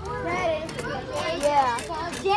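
Several children's voices calling out and talking over one another, no clear words.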